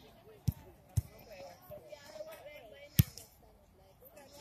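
Sharp thuds of a football being kicked on a grass pitch: two about half a second apart near the start, then a louder, sharper one about three seconds in.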